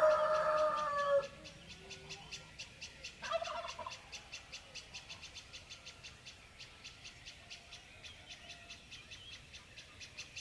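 Domestic fowl calling at dawn: a long, loud crowing call ends about a second in, and a shorter call follows about three seconds in. Throughout, a small bird chirps rapidly and evenly, about four high chirps a second.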